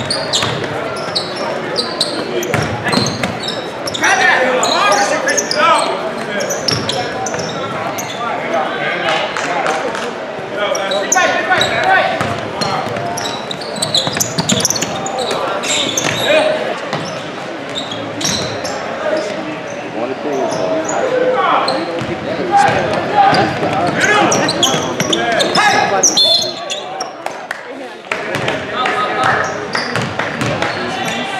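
Basketball game in a gym: the ball bouncing on the hardwood court among players' and spectators' voices calling out.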